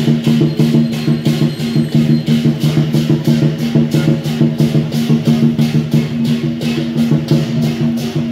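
Dragon dance percussion: a drum beaten fast with cymbals clashing in an even, driving rhythm, several crashes a second.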